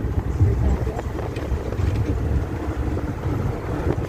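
Steady low rumble of a bus in motion, heard from inside: engine and road noise, with wind noise on the microphone.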